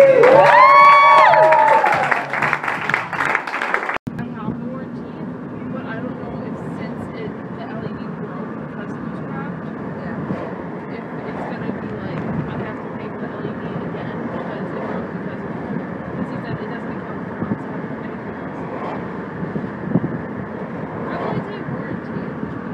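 A loud, drawn-out vocal cry that rises and falls over about two seconds. After a sudden cut about four seconds in, the steady road noise of a moving car follows, heard from inside the cabin.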